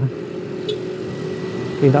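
Motorcycle running at low speed in town traffic, heard from the rider's own bike: a steady hum with light road and traffic noise.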